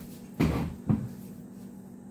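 Two knocks about half a second apart, the first with a short tail after it, over a steady low hum.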